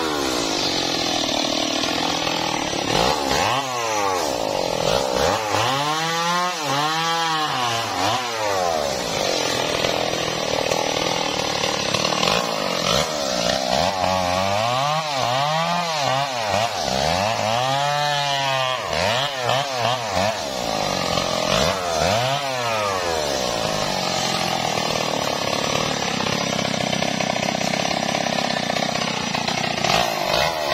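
Stihl MS 381 two-stroke chainsaw running throughout, its engine revving up and dropping back again and again as it cuts through the branches of a felled tree.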